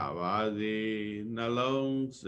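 A voice chanting a metta (loving-kindness) recitation in long, sustained tones, the pitch dipping and returning at the start of the phrase.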